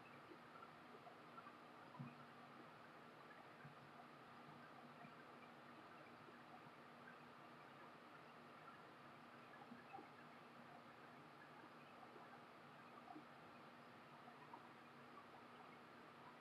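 Near silence: the faint steady hum of a portable air conditioner running in the room, with a few tiny soft ticks.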